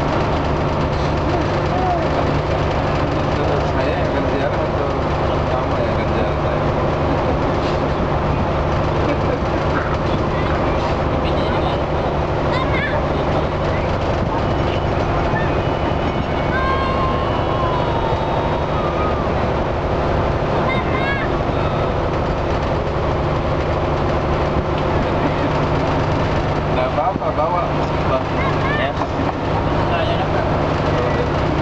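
Ferry engine running at a steady pitch, with people's voices in the background.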